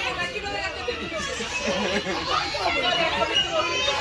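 Several voices chattering at once, overlapping and continuous.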